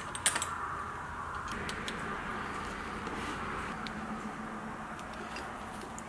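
Metal tools clinking briefly as a wrench is taken off a pegboard hook, then a few faint clicks of metal parts being handled, over a steady background hiss.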